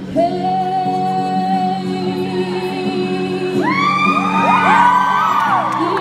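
A singer holds one long sung note over steady musical accompaniment. About three and a half seconds in, several audience members start whooping and cheering over the music.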